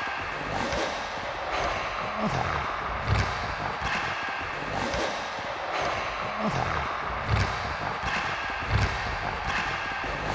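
Footsteps on a hard wooden floor, about one step every three-quarters of a second, over a steady low background.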